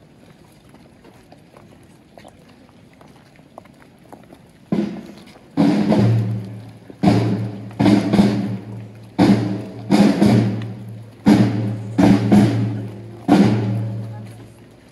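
Drums beating a slow processional rhythm, coming in suddenly about five seconds in; the loud strokes fall in loose pairs, each followed by a deep ringing boom that fades.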